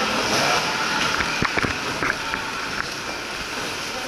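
Steady hubbub of a busy airport concourse: people walking and a suitcase rolling on the hard floor, with a handful of light clicks between one and two seconds in.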